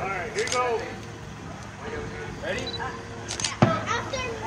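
A stick strikes a hanging piñata once, a sharp hit near the end, just after a brief swish of the swing. Voices of people standing around are heard earlier.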